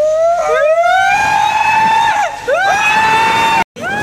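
Riders screaming as their raft goes down a water slide: a long rising yell, then after a short break a second one that cuts off suddenly just before the end.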